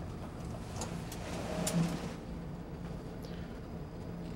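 Quiet room with a steady low hum, and faint rustling and a few light knocks about one to two seconds in as a person sitting on a tub transfer bench lifts her legs out over the bathtub edge with a cane.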